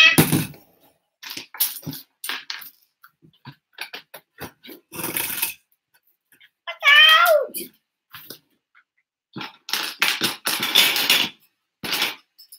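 Loose plastic LEGO bricks clicking and clattering as hands rummage through a pile of pieces on a wooden table, with longer rattling bursts of sifting. About seven seconds in, a child's short voiced sound falls in pitch.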